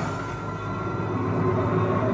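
Film soundtrack of a heavy dump truck with a snowplow blade running along a road: a steady, dense rumble of engine and metal scraping on asphalt, with film score underneath, heard through a TV.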